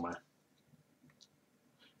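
A few faint, light clicks from hands handling a small resin model aircraft and a paintbrush, in an otherwise quiet room.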